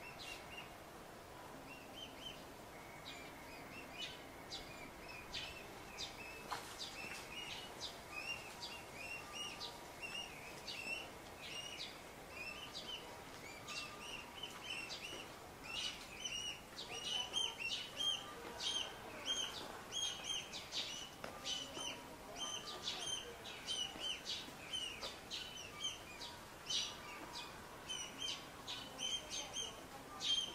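Mute swan cygnets peeping: short, high, slightly falling peeps, sparse at first, then coming several a second and louder over the second half.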